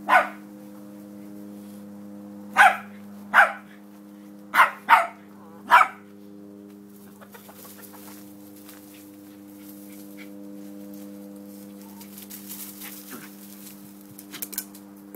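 West Highland white terrier giving six short barks in the first six seconds, two of them in quick succession, with chickens clucking, over a steady low hum.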